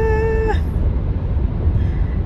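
A woman's voice holding one steady, high sung note that ends about half a second in, then only the low rumble of road noise inside a moving car.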